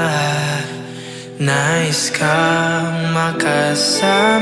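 Filipino pop ballad recording: a male voice holds long sung notes over instrumental backing, dipping quieter for a moment about a second in.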